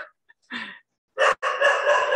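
A rooster crowing: a couple of short notes, then one long held note of steady pitch lasting over a second, starting about a second and a half in.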